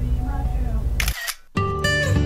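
Smartphone camera shutter click about a second in, over the low hum of a car cabin. After a brief gap of silence, acoustic guitar music starts.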